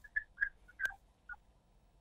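Faint, broken-up chirps and blips on a telephone call-in line, with one sharp click about a second in: the caller's audio breaking up.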